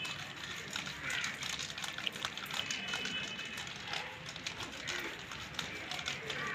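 Faint sloshing of water and mango-ripening powder (calcium carbide) in a plastic bottle being shaken by hand, with small knocks of the bottle as it is shaken.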